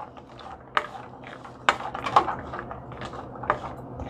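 A spatula scraping and clacking against a stainless steel pan while stirring frying diced vegetables, with a few sharp irregular clacks over a faint low steady hum.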